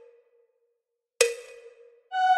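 One sharp metronome click about a second in, with a short ringing tail, during a bar of rest; before it the tail of a held note fades out.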